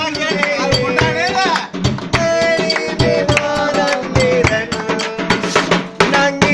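Live party music: a hand drum beaten in a fast, steady rhythm under voices singing along.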